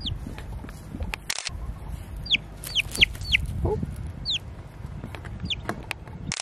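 Young chicken chick peeping: a series of short, high peeps that each fall sharply in pitch, about six in all, several in quick succession in the middle.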